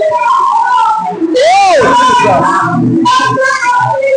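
A congregation's many voices praying and crying out aloud together, loud and overlapping, with a rising-and-falling whistle-like cry about one and a half seconds in.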